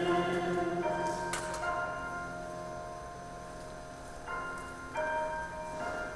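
Grand piano playing soft, sustained notes that ring on, a few new notes entering through the pause. A woman's sung note dies away just after the start.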